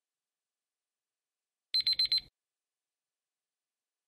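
Digital countdown-timer alarm: four quick, high-pitched beeps within about half a second, a little under two seconds in, as the timer runs out.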